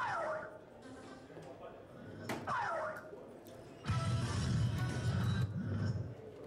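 Soft-tip electronic dartboard: a falling electronic tone right at the start after a dart hit, then a dart striking the board about two seconds in with the same falling hit tone. From about four seconds in comes the machine's louder end-of-turn sound effect, lasting about two seconds, as the board moves on to the next player.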